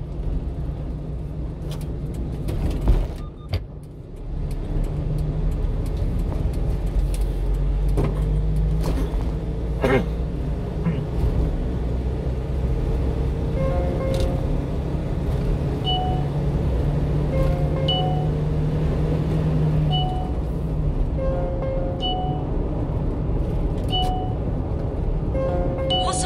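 Steady engine and road rumble inside a moving 1-ton truck's cab, with quiet music playing along with it and a single loud thump about three seconds in.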